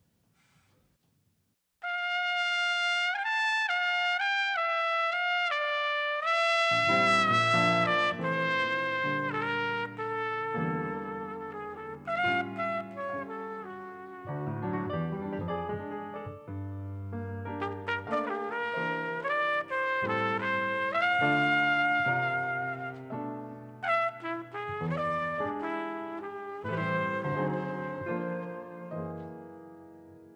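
Solo jazz trumpet enters about two seconds in, playing a slow melody alone. A few seconds later a piano accompaniment joins underneath the trumpet line.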